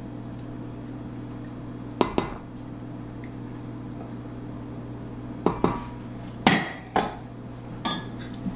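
A spatula knocking and scraping against a measuring cup and a stainless-steel mixing bowl as sour cream is scraped out: a handful of sharp knocks, one about two seconds in and a cluster between five and seven seconds, over a steady low hum.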